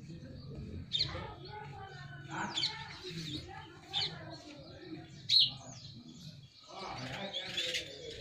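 Birds chirping: short, sharp high calls every second or so, the loudest a little past the middle, over a steady low background murmur.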